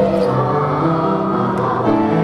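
Choral music: a choir singing held notes in harmony.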